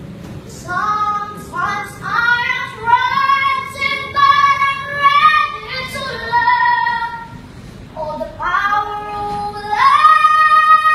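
A young child singing in a high voice, several long held phrases with gliding notes, with a short break about three-quarters of the way through before singing again.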